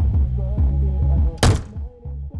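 Music with a deep, steady bass line, cut across about one and a half seconds in by a single loud thunk.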